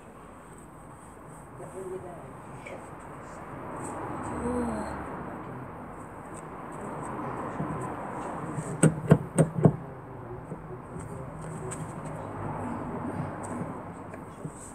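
Four quick sharp knocks close together about nine seconds in, from the car door as it is wiped around the handle with a cloth, over a steady outdoor background with faint voices.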